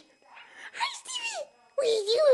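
Baby squealing with delight: two drawn-out high cries that slide down in pitch, the second louder and starting near the end.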